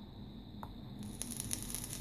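Rebuildable atomizer's temperature-control coil fired in watt mode at 40 watts, e-liquid faintly sizzling and crackling on the coil from about a second in.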